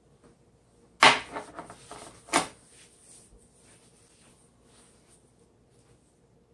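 A bowl knocking down onto a cutting board: a sharp knock about a second in, a short rattle, and a second knock about a second later. After that comes faint rubbing as a hand works dry spice rub into raw steak.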